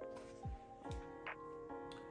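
Quiet background music: held chords over a deep, soft kick drum and light ticking percussion.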